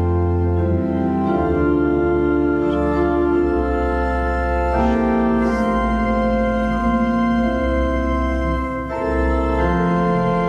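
Church organ playing a hymn tune in sustained chords that change every second or so, with a brief break about nine seconds in.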